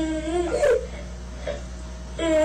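A toddler of about two crying and whining, shown as a child's put-on, pretend crying. One drawn-out, wavering wail trails off in the first half second, a short whimper follows, then it goes quieter.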